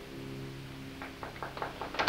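The last held chord of the song's accompaniment dies away, and about a second in a few scattered handclaps start, quickly thickening into applause.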